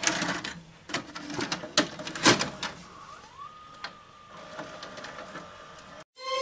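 VHS cassette being loaded into a video recorder: a run of plastic clicks and clunks as the mechanism takes the tape, the loudest a little over two seconds in. Then a motor whine rises and holds one steady pitch as the tape threads and starts to play.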